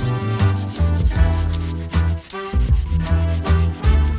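Hand pruning saw cutting through a green willow stem in repeated back-and-forth strokes, heard over background music.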